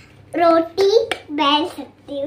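A young girl talking in short high-pitched phrases, with a sharp click about a second in as plastic toy dishes are handled.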